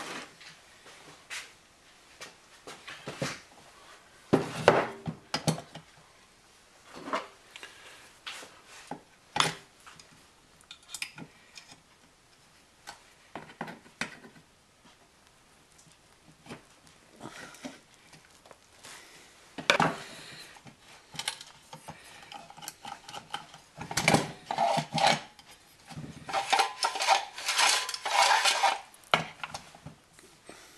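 Hand-handling of a plastic outboard recoil starter housing and small metal parts on a workbench: scattered clicks, knocks and taps of plastic and metal, with a busier run of rattling clicks near the end.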